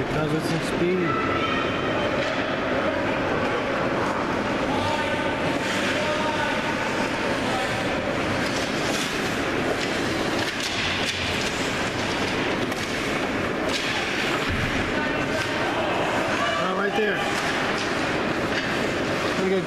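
Ice hockey game ambience in an indoor rink: a steady wash of skates and play on the ice, with a few sharp clacks and voices calling out near the start and again near the end.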